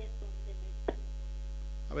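Steady electrical mains hum on the audio line, with one faint click about a second in.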